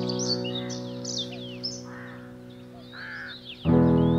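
Slow piano chords, each struck and left to fade, over birdsong: chirps and whistled calls with a few harsher calls in between. A new chord is struck near the end.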